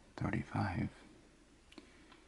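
A man's soft-spoken voice saying two quick syllables, then a single light click near the end.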